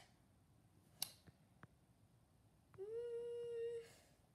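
A person humming one steady held note, a short "hmm" that rises slightly at its start and lasts about a second near the end, after a soft click about a second in.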